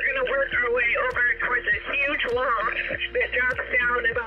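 A person talking in a thin, radio-like voice over background music.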